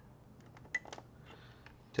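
Light plastic clicks and taps as a cable's plug is handled and pushed into its socket on a radio module. There is a quick cluster of small clicks about a second in.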